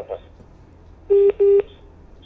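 Two short telephone beeps close together, each a steady low tone lasting about a quarter of a second, a little over a second in.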